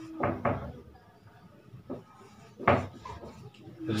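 Whiteboard marker writing on a whiteboard: a few short strokes about a quarter and half a second in, and a louder knock-like stroke a little under three seconds in.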